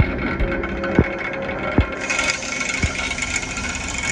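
Excavator-mounted vibratory plate compactor running on a tieback rod: a steady mechanical drone with three dull thumps, which turns harsher about halfway through. The vibration is loading a Manta Ray earth anchor, working it to stand back up straight in the ground.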